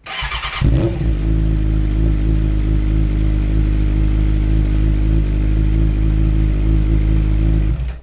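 Suzuki GSX-R600 K6 inline-four engine cranked by the starter for about half a second, catching and then idling steadily, and switched off abruptly near the end. It starts straight away on the newly fitted battery.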